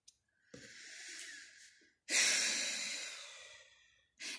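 A woman's breath close to the microphone: a slow breath in, then a louder long sigh out that starts sharply and fades away.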